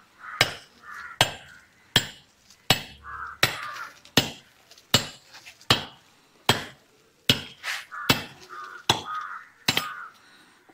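A laterite stone block being dressed with a heavy, axe-like laterite-cutting tool: a steady run of sharp chopping strikes on the stone, about one every three-quarters of a second, some thirteen in all.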